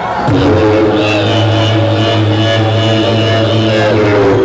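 Beatboxer's amplified vocal bass drone: one low, steady hum held for over three seconds, with higher held tones sounding above it from about a second in.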